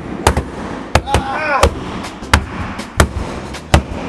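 Axe and claw hammer chopping and striking into the painted wall panels of a box, about seven sharp blows at an uneven pace. A short vocal exclamation comes about a second and a half in.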